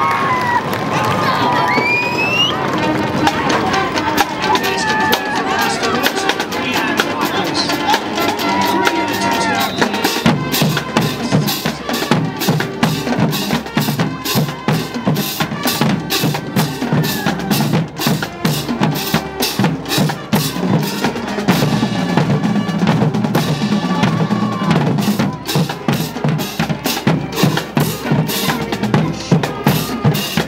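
Crowd cheering and shouting at a touchdown, then from about ten seconds in drums playing a steady beat over the crowd noise.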